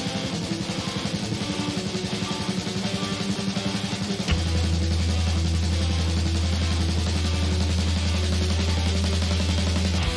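Hard rock song with distorted electric guitar and drum kit: a fast, driving rhythm for about four seconds, then a sharp hit and full chords held over a sustained low bass note.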